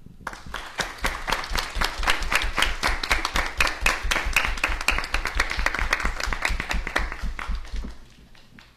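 An audience of many people applauding, with dense, irregular clapping that stops abruptly near the end.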